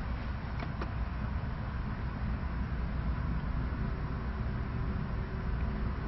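Steady low background rumble with a faint hiss and a faint steady hum, and two faint clicks less than a second in.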